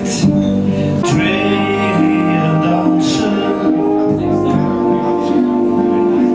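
Live chamber-pop band playing: trumpet holding long notes over cello, harp and keyboard, with a man singing.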